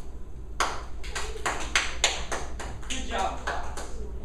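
A rapid run of sharp hand claps, about five a second, starting about half a second in and going on for about three seconds, with a voice joining near the end.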